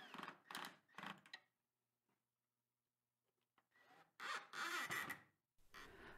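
Faint short bursts of screws being driven into a maple support: three quick ones in the first second and a half, then a longer one about four seconds in.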